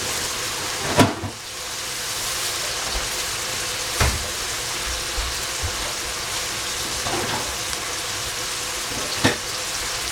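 Sliced carrot, celery and capsicum sizzling in oil in a stainless steel pot, a steady hiss with three sharp pops: about a second in, about four seconds in and near the end.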